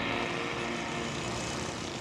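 Steady hum of busy street traffic, engines running continuously at an even level.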